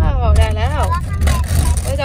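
A high-pitched voice speaking over the steady low road rumble inside a moving car.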